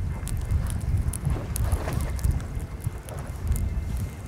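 Wind buffeting the microphone in a low, uneven rumble, with scattered light clicks and knocks.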